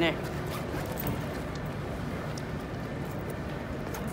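Steady outdoor city background noise, with indistinct chatter from people walking nearby.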